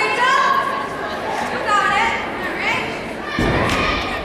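Spectators' voices and chatter echo in a large gym. About three and a half seconds in there is a dull thud as a gymnast's body comes down on the balance beam.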